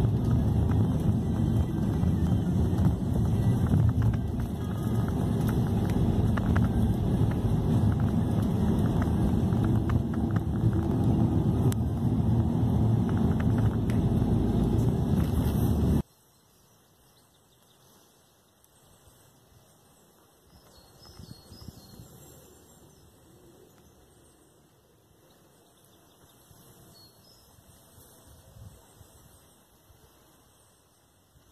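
Steady road and engine noise heard inside a moving car's cabin, a loud low rumble, which cuts off suddenly a little past halfway. After it comes near quiet outdoor ambience with a faint swell a few seconds later.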